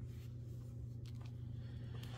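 A faint, steady low hum with a few light clicks and rustles over it.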